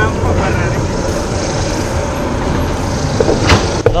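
Steady rush of wind over an action camera's microphone as the bike rolls along, with a few short knocks or clicks about three and a half seconds in.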